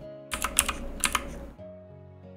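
Computer keyboard keys clicking, several quick presses in a cluster that stops about a second and a half in, over soft background music.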